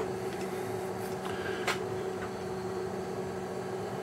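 Steady hum of a running Tektronix TLS216 logic scope's cooling fan, with a single light click a little under two seconds in.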